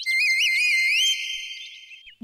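A high whistle sounds. It wavers up and down a few times, slides upward about halfway through, then holds and fades away.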